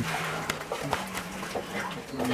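Brown bear cubs humming while they feed: a string of low, steady, drawn-out tones, with a sharp click about halfway through.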